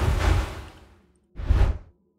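Wind-whoosh sound effects auditioned from a stock audio library: a rush of air that swells and fades out over about a second, then a second, shorter whoosh about a second and a half in.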